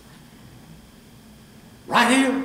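Quiet room tone, then near the end a sudden loud voiced cry from a man that rises and falls in pitch.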